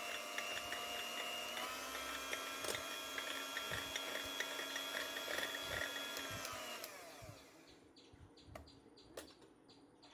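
Electric hand mixer beating two egg whites to a light froth, its motor running with a steady whine that steps up slightly in pitch about two seconds in. Around seven seconds in it winds down and stops, followed by a few faint clicks.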